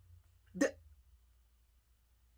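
A woman's single short, clipped vocal sound about half a second in, the cut-off start of a word, over a faint low hum.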